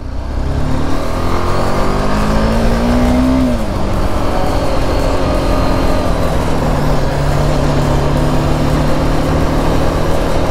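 Motorcycle engine heard from the rider's seat, rising in pitch for about three seconds as it accelerates, then dropping back and settling to a steady cruise. A steady rush of wind and road noise runs underneath.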